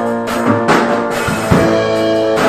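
Instrumental passage of a song: electric guitar holding chords over a drum kit, with no singing.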